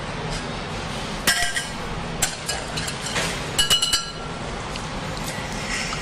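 Kitchenware clinking a few times over steady kitchen background noise, with two clinks about a second in and about three and a half seconds in that ring briefly like struck glass or metal.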